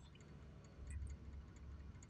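Faint low rumble of a car cabin, slightly stronger near the middle, with a few faint tiny ticks.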